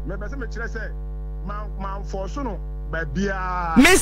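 Steady electrical mains hum: a low buzz with a stack of evenly spaced overtones, under faint speech that comes and goes.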